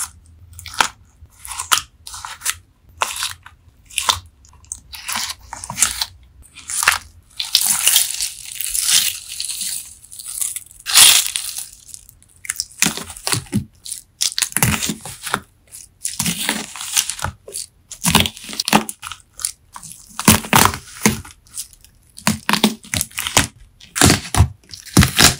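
Crisp crackling and crunching of wax-coated, slime-soaked melamine sponge pieces being cut and crushed. The sound comes in irregular bursts, with a longer stretch of steady crackling a third of the way in. It is picked up by a phone's built-in microphone.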